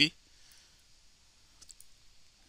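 A few faint computer mouse clicks, one about half a second in and a couple more near the end, after the tail of a spoken word.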